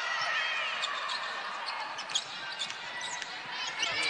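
A basketball bouncing on the hardwood court during play, with short high squeaks over the steady din of the arena.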